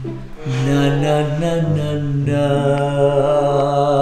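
Background music of long held notes over a sustained low note, with the chord shifting a couple of times.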